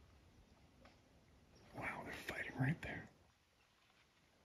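A person whispering a few words, for about a second and a half, starting about two seconds in. Low outdoor background before and after.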